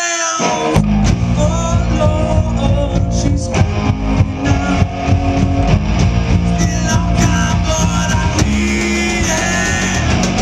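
Live rock band playing loud: electric guitars and a drum kit, with heavy low notes. A held sung line ends right at the start, and the full band crashes in under a second later.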